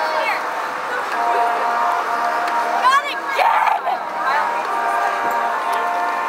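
Brass quartet of two trumpets and two trombones playing sustained held chords. A voice close to the microphone cuts in about halfway through and is briefly louder than the band.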